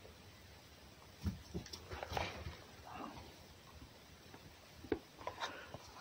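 Red fox eating meat taken from a hand: faint, scattered chewing and mouth sounds, with a single sharp click near the end.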